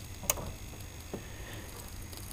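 Faint crackling ticks from a running vintage CRT television: one sharp click about a quarter second in and a fainter one about a second later, over a steady faint hum. The owner suspects the crackle comes from the speaker or a loose connection.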